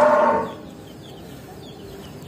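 A cow mooing: the tail of one steady, held call that fades out about half a second in, leaving low shed background.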